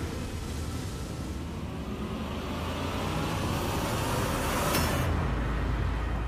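Sound-effect whoosh that swells over about five seconds to a short sharp swish, followed by a deep low rumble: a scene-transition effect of a TV drama.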